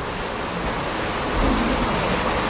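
Steady rushing of water, heard as an even hiss across all pitches, with a low rumble swelling a little past the middle.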